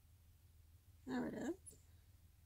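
A short vocal whine lasting about half a second, about a second in, rising in pitch at its end, over a faint steady low hum.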